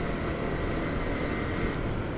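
Yamaha MT-15's 155 cc single-cylinder engine running at a steady cruise in fourth gear at about 45 km/h, mixed with wind noise from riding. The sound holds level, with no gear change or rev.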